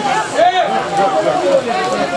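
Men's voices talking and calling out, more than one voice at a time.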